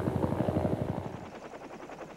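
Helicopter rotor chop, a fast even beating that fades away about a second in.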